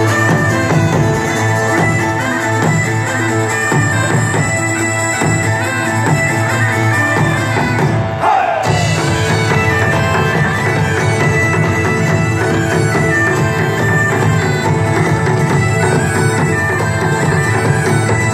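Loud, steady music with a sustained drone under a moving melody, in the sound of bagpipes.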